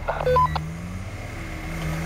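Volkswagen T3 Syncro pickup's engine running low and steady. A quick series of short beeps rising in pitch sounds about half a second in.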